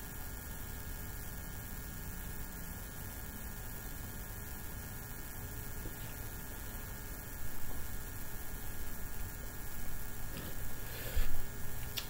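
Steady electrical mains hum and hiss in the recording, with a few faint soft noises in the second half.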